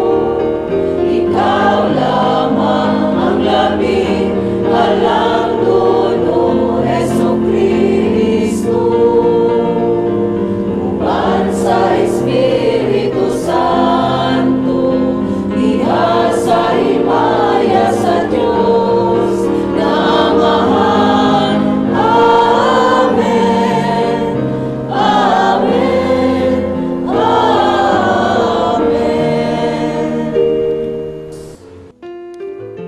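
Church choir singing a hymn, many voices together over held low notes.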